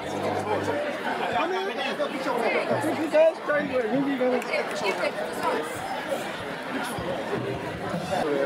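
Crowd chatter: many people talking over one another, with no single voice standing out.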